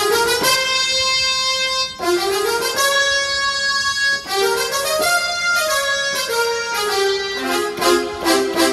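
A keyboard-played lead patch from MainStage, triggered over MIDI from a Yamaha arranger keyboard, plays a slow melody of long held notes that quicken near the end.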